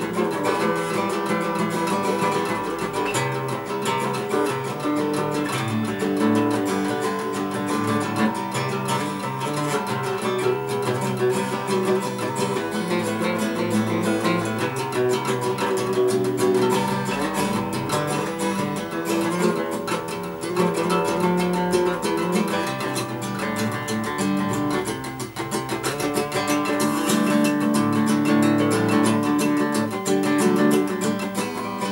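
Steel-string acoustic guitar being plucked and strummed in a continuous run of notes and chords, with a brief lull a little after three-quarters of the way through.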